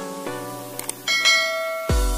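Light plucked background music, then about a second in a single bright bell chime rings out and sustains for most of a second. It is a subscribe-bell notification sound effect.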